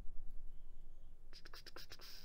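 Low room hum, then about a second and a half in a quick run of light clicks with a scratchy hiss, the sound of small handling at a computer desk.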